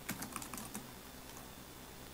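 Computer keyboard typing: a few faint key clicks in the first second, then fewer.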